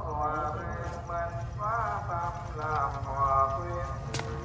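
Speech only: a voice talking throughout, over a steady low rumble.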